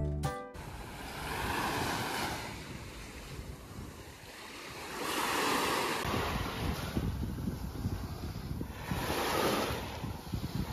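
Small waves washing up on a sandy beach, swelling three times about four seconds apart. Wind buffets the microphone from about halfway through. Background music cuts off right at the start.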